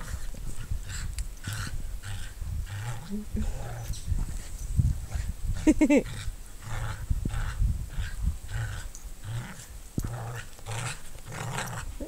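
Two dogs growling in play as they pull against each other on a ring tug toy, in short low growls that come and go.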